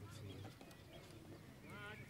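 Faint, distant voices of footballers calling out on the pitch during play, the clearest call near the end, over a low steady background hum.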